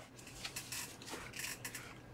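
Faint rustling and light handling noises with a few small scattered clicks, as of someone reaching down and picking something up.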